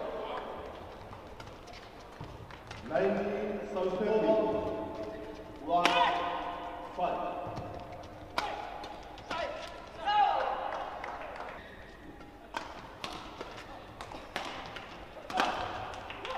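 Badminton doubles rally: racket strikes on the shuttlecock as sharp, irregular clicks, with bursts of voices in an echoing hall.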